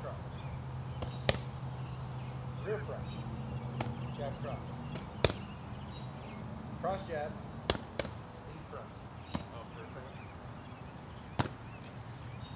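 Punches smacking into padded focus mitts, about seven sharp hits at irregular intervals, the loudest about five seconds in. A steady low hum sits under the first half and fades out about halfway through.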